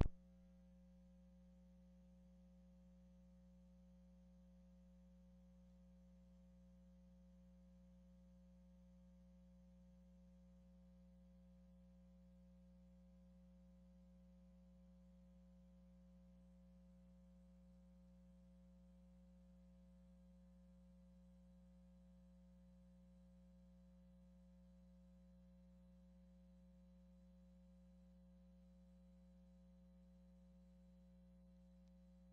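Near silence: a faint steady electrical hum on the audio feed, with a single click at the very start.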